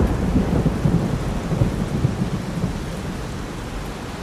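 Storm sound effect: a low rumble of thunder over a steady hiss of rain, dying away toward the end.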